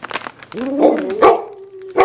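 Red-nose pit bull begging for a treat with a drawn-out, wavering vocalization that sounds like Chewbacca, starting about half a second in and ending on a held note.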